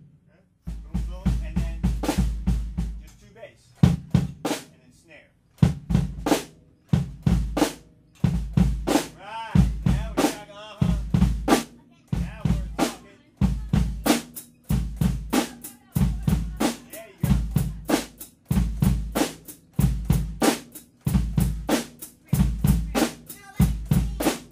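Acoustic drum kit played in a steady, repeating groove of bass drum and snare hits with cymbal strikes. The playing comes in after a brief pause at the start.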